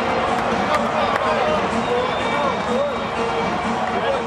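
Ballpark crowd cheering steadily, with many overlapping voices close by and a few sharp hand slaps from high-fives.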